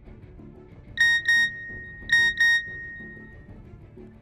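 A mobile phone's alert tone: two quick pairs of high beeps about a second apart, the last one ringing on briefly, over soft background music.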